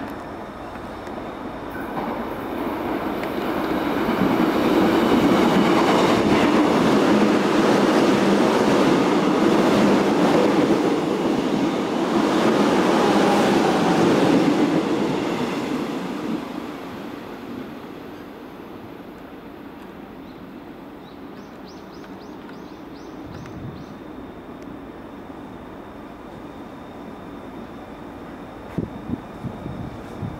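Korail Class 311000 electric multiple unit running through the station at speed without stopping. The sound builds over about four seconds, stays loud for about ten seconds as the cars go by, then fades away about sixteen seconds in, leaving a lower steady rumble.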